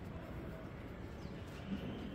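Steady low outdoor background noise, with a faint high bird chirp about a second in.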